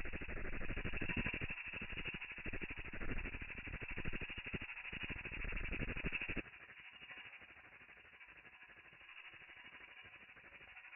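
Domestic ultrasonic cleaner running, a dense rapid crackling buzz of cavitation in its water. It drops sharply in level about six seconds in and carries on more faintly.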